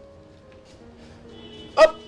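A dog barks once, short and loud, near the end, over faint steady humming tones.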